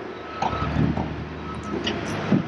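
Diesel engine of a CAT mini excavator running steadily while it digs a trench, a low continuous rumble with a few faint knocks.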